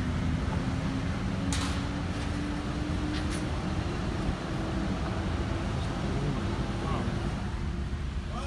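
Car engine and road noise heard from inside the cabin of a slowly moving car: a steady low rumble with a hum that rises slowly in pitch as the car gathers speed, and a couple of faint clicks.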